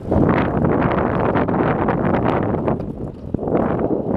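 Wind buffeting the camera's microphone while riding a bicycle, a loud, uneven rush that carries on through the whole stretch and eases a little near the end.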